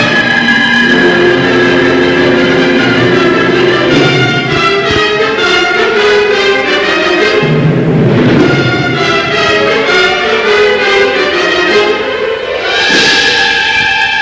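High school wind ensemble playing loud, sustained full-band chords.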